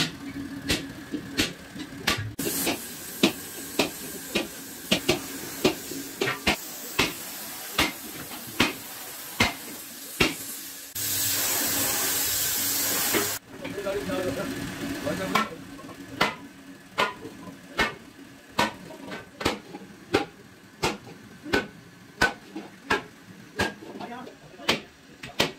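Repeated hammer blows on a large metal cookware bowl being shaped by hand, sharp metallic strikes at about two a second. About eleven seconds in, a steady hiss runs for a couple of seconds.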